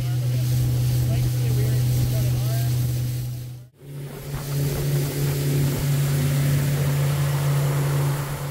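Motorboat engine running steadily at speed, a low drone over the rush of wind and water. It cuts off briefly about four seconds in and comes back slightly higher in pitch.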